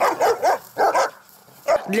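White Swiss shepherd dogs barking: about three short barks in the first second.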